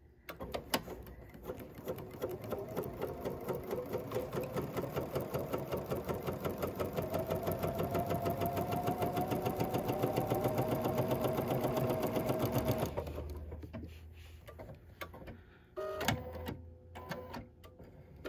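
Computerized sewing machine stitching a seam through quilting cotton: it picks up speed to a fast, steady run with a faintly rising whine, then slows and stops about thirteen seconds in. A few short mechanical clicks follow near the end.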